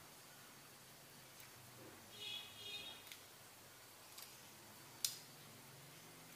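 Near silence: room tone with a few faint short clicks, and a faint high-pitched tone with several overtones about two seconds in.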